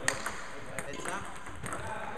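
Table tennis balls being struck by rackets and bouncing on the table in a fast multiball drill: a run of sharp clicks, the loudest just after the start, in a reverberant hall.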